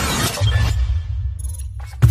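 Cinematic intro sound design: a sudden crash-like hit with crackling highs at the start, then a heavy, deep bass drone that thins out near the end.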